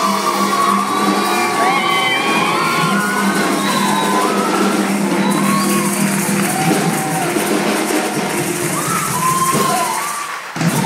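A live band playing, led by a fast maracas solo: a dense, steady rattle over a bass line and percussion. Short up-and-down whoops and cheers from the crowd ride over the music.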